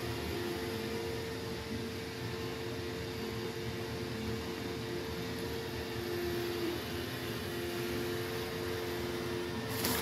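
A steady mechanical hum from a small motor or fan running, with two steady tones over it; the lower tone drops out shortly before the end.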